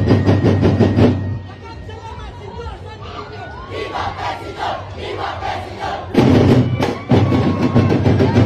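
A Sinulog drum and percussion band plays a loud, driving beat that stops about a second in. For the next several seconds the crowd and dancers shout and cheer with no drums. The drumming comes back in about six seconds in.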